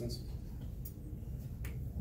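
Two short, sharp plastic clicks about a second apart, a dry-erase marker being capped and handled, over a steady low room hum.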